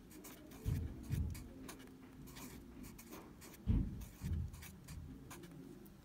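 Handwriting: quick, short scratchy strokes of a pen or marker, going on and off. Two pairs of dull low thumps stand out, about a second in and again near four seconds.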